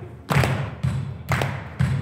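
Rock band playing heavy accented hits together, drums with low bass notes, three strikes in two seconds, the last two closer together, each ringing in the stone hall.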